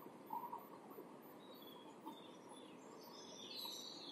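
Faint strokes of chalk on a chalkboard as a ring is drawn, very quiet over a low room hiss, with a few short high scratches near the end.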